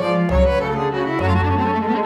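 A small string ensemble, violin over cello, playing a dance piece: the low cello notes change twice, and a high note is held from about halfway through.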